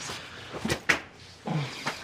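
Two quick pats of a hand on a clothed back during a hug, about a second in, followed by a short murmur from a man.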